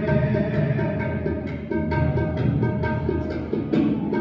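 Sikh kirtan music: held harmonium notes over a run of tabla strokes.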